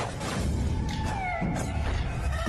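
Film background score with a heavy bass pulse and a sharp hit at the start. About a second in, a high wailing note slides down in pitch.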